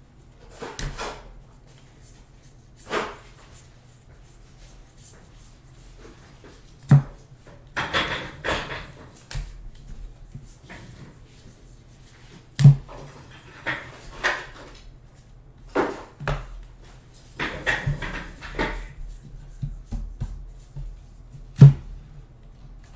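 A stack of baseball trading cards being flipped through by hand, card by card: dry cardstock rustles and flicks come in irregular bursts, with a few sharp taps, the loudest near the end. A low steady hum runs underneath.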